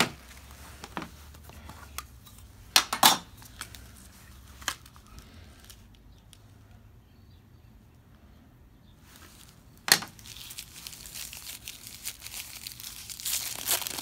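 Paper wrapping around a pocketknife crinkling and tearing as it is pulled off, building over the last few seconds. Before that come a few sharp clicks and knocks from handling.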